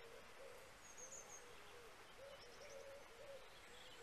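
Faint birds calling outdoors: a low call note repeated about twice a second, with a couple of brief high chirps from a small bird.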